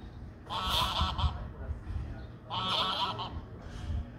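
Geese honking: two loud, pitched honking calls about two seconds apart.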